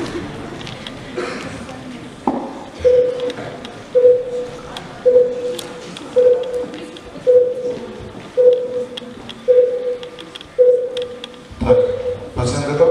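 Heart-monitor beep sound effect for a staged operation: a steady single-tone beep about once a second, starting about three seconds in.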